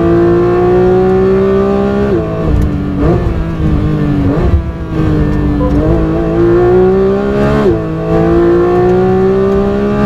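2022 Porsche 911 GT3's naturally aspirated 4.0-litre flat-six, heard onboard at full throttle. Its pitch climbs, then falls sharply about two seconds in as the car brakes for a slow corner, with two short jumps as it downshifts. It then pulls hard out of the corner and changes up once before eight seconds, the pitch climbing again after the shift.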